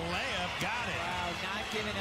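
A TV commentator talking over the court sound of a live basketball game, with a sharp knock about half a second in that fits a basketball bouncing on the hardwood floor.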